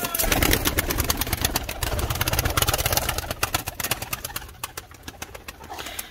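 Domestic pigeons flapping their wings in a wire-mesh loft: a rapid, dense clatter of wingbeats, loudest in the first half and thinning out toward the end.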